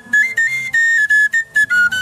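Background film music: a high, flute-like melody in short stepped notes over a low, pulsing accompaniment.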